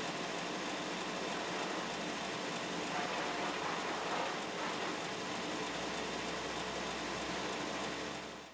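Large vertical band saw running: a steady whirring hiss from the moving blade and its wheels, swelling slightly for a moment near the middle.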